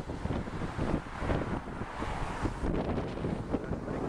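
Wind buffeting the microphone in a moving convertible with the top down, in uneven gusts over a low road rumble.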